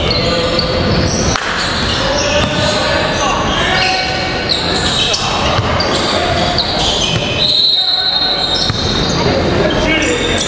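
Live sound of an indoor basketball game on a wooden court: a ball bouncing, players' voices and shouts, and short high squeaks, echoing in a large hall.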